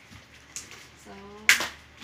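A single sharp snap while a taped cardboard parcel is handled, loud and short, about three quarters of the way in, with a faint click shortly before it.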